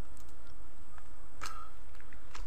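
A few faint, sharp snaps and crackles of dry brushwood twigs, the clearest about one and a half seconds in, over a steady low rumble of wind on the microphone.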